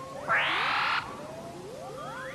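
Animated sci-fi machine sound effects: a steady electronic tone under repeated quick rising electronic bleeps, cut across about a quarter of a second in by a loud buzzing burst lasting under a second.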